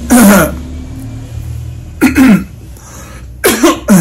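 A man coughing in short fits: a cough at the start, another about two seconds in, and a quick double cough near the end.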